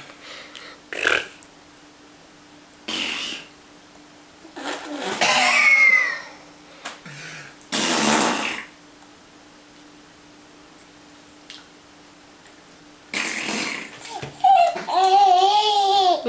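A baby laughing and squealing in short bursts with pauses between them, with some breathy laughs and a high-pitched babbling voice near the end.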